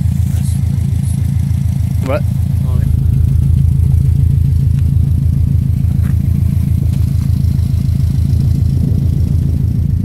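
Subaru WRX STi's turbocharged flat-four boxer engine idling through an aftermarket exhaust: a loud, steady, evenly pulsing low rumble that gets a little louder about three seconds in.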